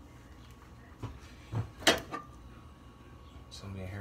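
A few knocks of kitchenware being handled, the loudest a sharp clank about two seconds in.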